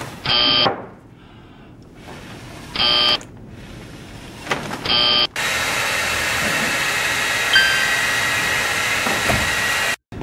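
Three short, buzzy electronic beeps about two and a half seconds apart. Then a hand-held hair dryer blows steadily from about five seconds in, holding a ping-pong ball aloft in its air stream, and cuts off suddenly at the end.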